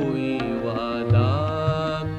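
Instrumental interlude of a ghazal: a melody instrument plays sliding phrases over tabla, with deep bass-drum strokes from the tabla.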